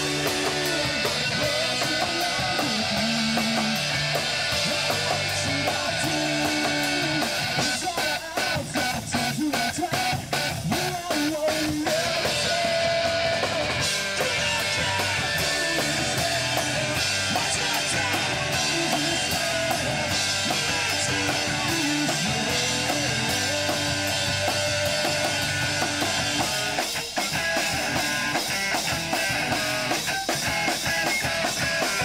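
Rock music with electric guitar and a drum kit playing on without a break, the drums hitting in a steady beat.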